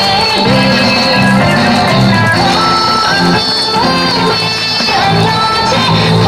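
Continuous dance music led by plucked string instruments, playing steadily without a break.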